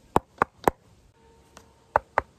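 Knuckles rapping on a composite laminate panel, a fibreglass (FRP) skin over an insulating foam core: three quick sharp knocks about a quarter second apart, then one more near the end.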